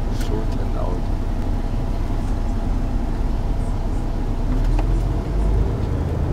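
Tour coach interior: a steady low engine and road rumble heard from inside the cabin, swelling briefly about five seconds in.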